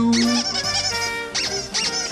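Toy rubber duck squeaking in several short runs over light instrumental music, just after a held sung note ends.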